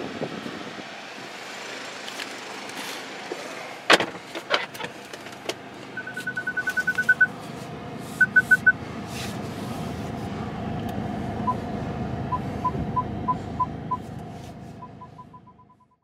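Steady hum inside a BMW 525 F11 cabin, with the engine running and the repaired heater blower working. A sharp click comes about four seconds in. Then the car gives electronic beeps: a fast run of higher beeps, four more shortly after, and lower beeps that come faster and faster toward the end.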